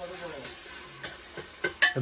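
Hands working pieces of raw chicken in a plastic basin of water: a steady wet splashing and swishing, with a few small knocks against the basin in the second half.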